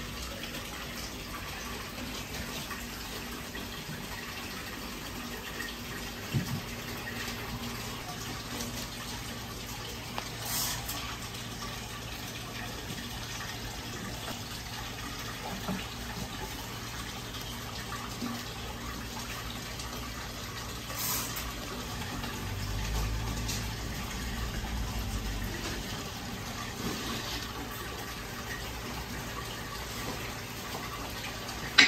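Steady rushing background noise, with a few light clicks and knocks and a low rumble that swells about two-thirds of the way in.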